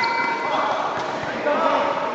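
Voices of players and spectators calling out during a volleyball rally in a gym, with a sharp thud of the volleyball being played about a second in.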